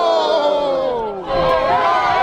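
Wrestling crowd yelling: one long drawn-out cry that slowly falls in pitch, then, from a little past the middle, many voices shouting over each other.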